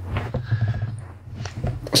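Irregular knocks, scuffs and rustling of someone moving about and handling things near the microphone, over a steady low hum.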